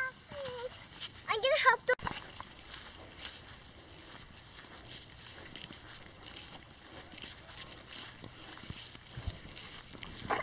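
A child's voice and a short, high, wavering squeal, then a sharp click, followed by soft, uneven footfalls of running on grass.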